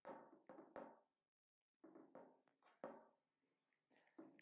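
Near silence, with a few faint taps and clicks from hands handling a compound bow's strings and cables.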